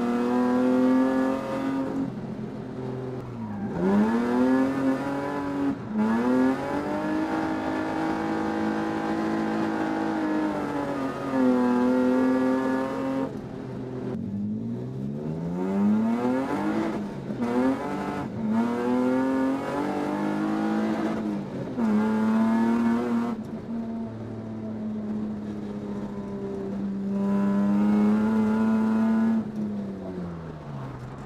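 VAZ (Lada) drift car's engine heard from inside the cabin, driven hard: the revs are held high for a few seconds at a time, then drop sharply and climb back, over and over.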